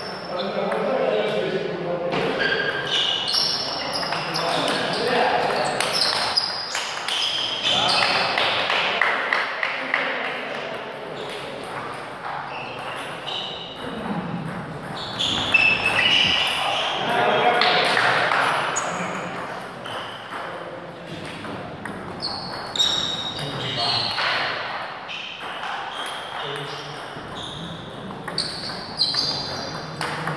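People talking throughout, over the sharp clicks of a table tennis ball struck by paddles and bouncing on the table during rallies.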